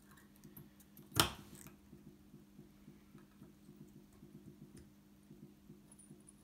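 Steady low electrical hum with faint scattered ticks, and one sharp tap about a second in.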